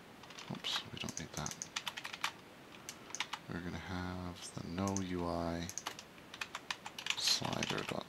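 Typing on a computer keyboard, spurts of quick key clicks, with two drawn-out hums from a man's voice about halfway through.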